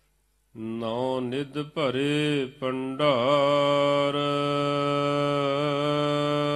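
A man's voice chanting a line of Gurbani in slow melodic Hukamnama recitation. It comes in about half a second in, glides up and down, then settles into one long held note of about four seconds.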